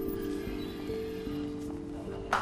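Background music of soft held chords that shift note a couple of times.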